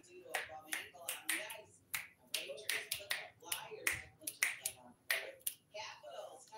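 A quick, uneven run of sharp clicks, about two to three a second, over faint talk in the background.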